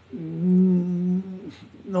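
A man's drawn-out hesitation hum, a held "yyy" at one steady pitch, lasting over a second, with speech resuming near the end.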